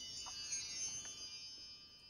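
A shimmering chime with high ringing tones, fading away.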